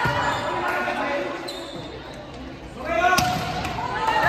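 Volleyball match play in a reverberant gym: one sharp smack of a hand on the ball about three seconds in, with players and spectators shouting around it.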